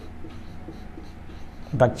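Marker pen writing on a whiteboard: a run of quiet short strokes as a word is written.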